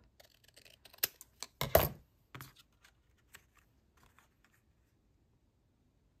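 Scissors cutting a small photo print: a few short, sharp snips, the loudest about two seconds in, followed by faint ticks of card and paper being handled.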